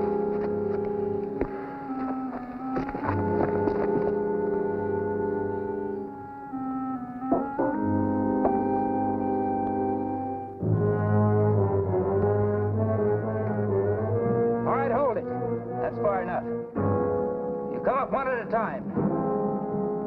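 Orchestral background score led by brass, playing held chords that shift every second or two, with rising and falling figures near the end.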